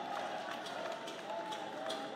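Quiet background ambience: a steady low hiss with faint wavering tones.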